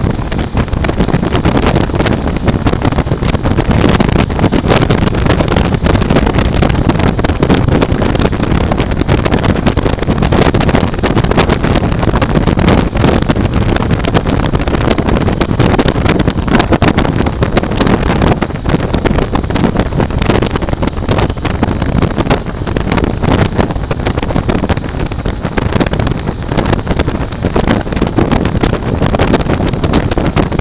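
Loud, steady wind rush and buffeting on the microphone of a motorcycle riding at about 90 km/h, with engine and road noise underneath.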